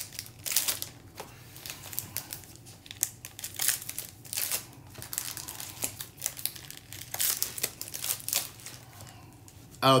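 Foil trading-card pack wrappers crinkling and crumpling in the hands, a string of irregular crackles.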